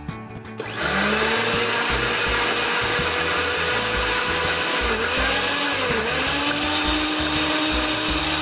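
Countertop glass-jug blender starting about a second in and running at high speed, puréeing beans, tomato and seeds into a sauce. Its whine rises as the motor spins up, then dips briefly twice about two-thirds of the way through as the load shifts.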